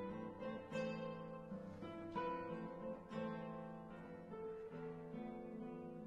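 Two classical guitars playing a duo, with plucked notes and chords struck about once a second, each left to ring and fade.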